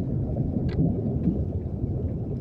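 Steady low rumbling noise, with a faint click a little under a second in.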